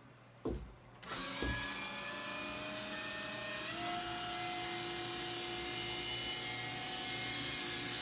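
A small electric motor whirring steadily, starting about a second in and stepping up in pitch near four seconds. Two short thumps come just before it starts.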